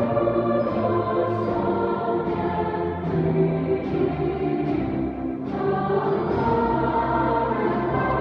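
A chorus singing held chords in a large cathedral, the voices sustained and changing chord every second or so, with a short break about five and a half seconds in before the next chord.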